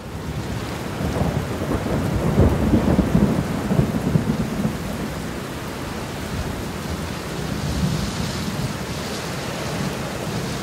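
Rain and thunder sound effect: steady heavy rain with a low thunder rumble that swells about a second in and rolls off after about four seconds, leaving the rain going on.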